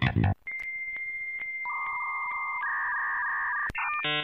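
Dial-up modem handshake: a steady high answer tone with regular clicks, then two buzzing tones, a lower one and then a higher one, after a bass-guitar music cue cuts off just before. New music starts near the end.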